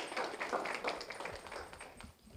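Audience applauding, the clapping thinning out and dying away toward the end.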